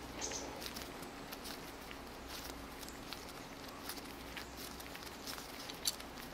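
Faint small clicks and rubbing as locking pliers, worked in gloved hands, turn a broken-off bolt stub out of a metal suspension-link end. A steady low hum runs underneath, and a sharper single click comes near the end.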